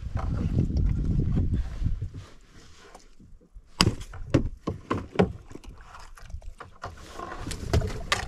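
Rustling and rubbing as a person shifts about in a small boat, then a quick series of sharp knocks and taps as a caught snakehead is handled against the boat's hull and gear.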